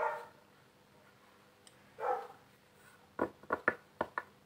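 A dog barks twice, two short barks about two seconds apart. Four quick sharp taps or clicks follow near the end.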